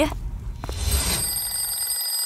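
Twin-bell alarm clock ringing, its hammer rattling fast and evenly on the bells. The ringing starts about a second in.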